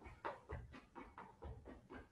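Faint quick footsteps on a hard gym floor, about four light taps a second, as feet step in and out of an agility ladder, with hard breathing.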